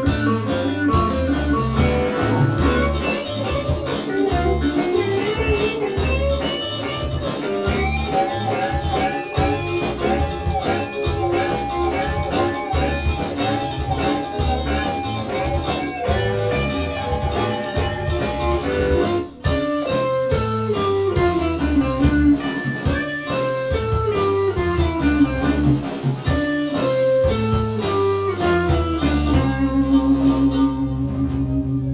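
Live rock band playing an instrumental passage: two electric guitars through amplifiers over drums, the lead guitar repeating a melodic figure, then playing descending runs after a brief break about two-thirds of the way through.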